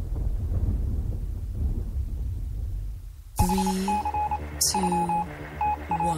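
A radio-show intro jingle: a low music bed fades out over the first three seconds. Then, about three and a half seconds in, a beeping electronic tone starts suddenly, pulsing on and off in short and long beeps over lower tones that slide slightly downward.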